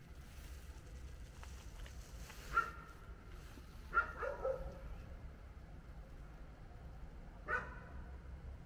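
A dog barking in short single barks: one about two and a half seconds in, a cluster of two or three around four seconds, and one more near the end.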